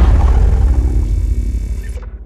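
Deep, low sound-effect tail of a logo intro sting: the boom left after the sting's impact hits dies away steadily over two seconds.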